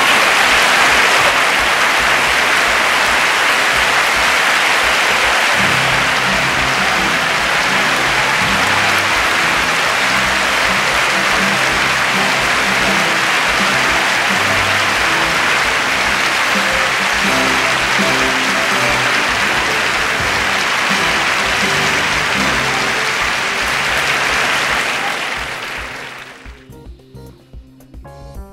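Large audience applauding steadily, with music joining underneath about six seconds in; the applause fades away near the end.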